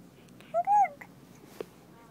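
A baby's short, high-pitched squeal, rising and then falling in pitch, about half a second in.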